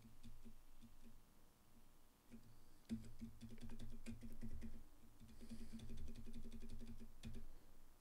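Computer keyboard keys being tapped: a few scattered taps, then a fast run of rapid, faint tapping from about three seconds in until near the end.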